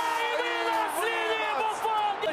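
A sports commentator's excited, drawn-out shouting over stadium crowd noise.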